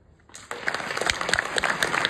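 A brief hush, then audience applause breaks out about half a second in and goes on as dense, steady clapping.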